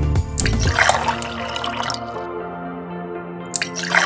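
Light background music with a dubbed liquid-pouring sound effect that plays twice: once from about half a second in and again near the end.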